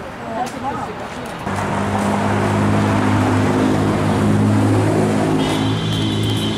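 A motor vehicle's engine running close by as a steady low hum. It comes in abruptly about a second and a half in and holds level.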